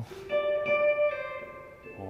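Stratocaster-style electric guitar played through a Subdecay Super Spring Theory spring-reverb pedal: a few single notes picked about half a second apart, left ringing and slowly fading.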